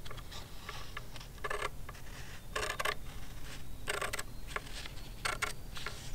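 Scissors cutting through a sheet of paper along a line: a series of short snips, roughly one every second, each with a brief paper rustle.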